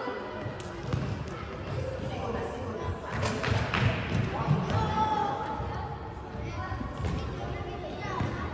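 Futsal ball kicked and bouncing on a wooden sports-hall floor, a few sharp thuds with a cluster about three to four seconds in, over shouting voices echoing in the large hall.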